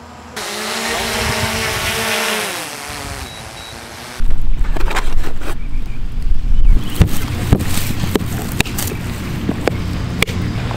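DJI Mavic Air 2 drone's propellers whining in flight, several tones gliding together and dipping in pitch near the three-second mark. About four seconds in, wind buffets the microphone, and a run of sharp clicks and knocks follows as the latches and lid of a hard plastic carrying case are worked.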